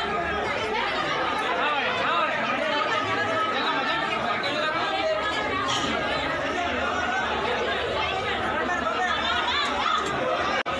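Many voices at once, a steady crowd babble with no single voice standing out.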